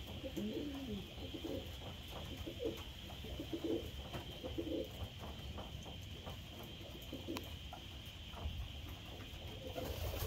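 Racing pigeons cooing over and over, the low rolling coos of cock birds courting hens in the loft.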